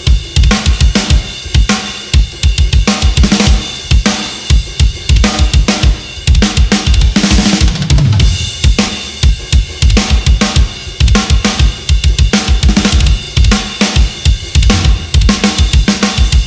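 Acoustic drum kit played hard and fast in a metal groove: rapid double bass drum strokes under snare and crash cymbals, with no other instruments. About halfway through a short fill runs down in pitch.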